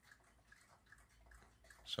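Near silence: quiet room tone with a few faint ticks, and the start of a spoken word right at the end.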